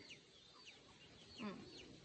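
Faint bird calls in quiet surroundings: short high chirps scattered throughout, and one lower, louder call about one and a half seconds in.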